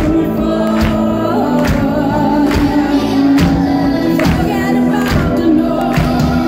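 Symphonic metal band playing live: a woman's lead vocal held over guitars, keyboards and drums, with a heavy drum hit a little under once a second. Loud, heard from within the audience.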